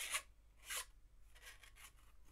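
Cardstock rubbing on cardstock as a small die-cut card drawer slides into its papercraft sleigh: two short brushing scrapes in the first second, then fainter scuffs.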